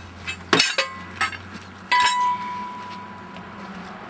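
Steel hand tools clinking and clanking against each other as they are put down: four sharp metallic clanks in the first two seconds, the last leaving a ringing tone that fades over about a second and a half.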